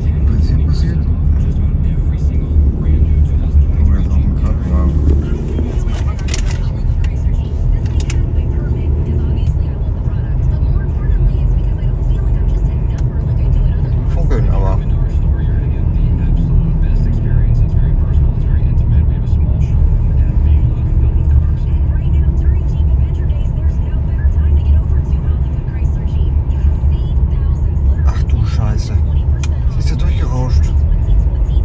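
Steady low road and engine rumble heard from inside a Ford Explorer's cabin while it drives along a highway, with faint talk at times.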